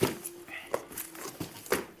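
Cardboard packaging being handled: box flaps and a fabric carrying bag shifted about, with a few sharp knocks and rustles.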